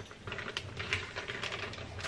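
Clear plastic cookie-dough wrapper crinkling as it is handled: a quick run of small, irregular clicks and rustles.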